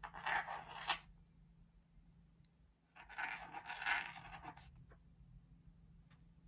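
A scratch pen scraping across a black rainbow scratch-art card, drawing lines into the coating: two short bouts of dry scratching, the second longer, with a pause between.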